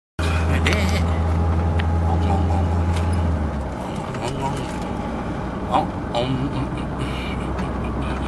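Steady low drone of a car's engine and road noise heard from inside the moving car's cabin, easing off about three and a half seconds in.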